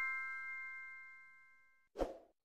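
Chime sound effect of a subscribe-button animation's notification bell ringing out: several clear bell-like tones fading steadily and cutting off just before the end, then a brief soft pop.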